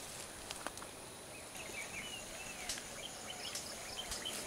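Faint forest ambience: a steady high insect drone, with short chirping bird calls through the second half and a few small clicks.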